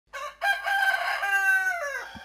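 A rooster crowing: a short first note, then one long cock-a-doodle-doo that falls in pitch at the end.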